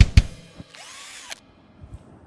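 Intro music: two sharp drum hits, then a whirring sound effect whose pitch rises and falls for under a second before cutting off suddenly.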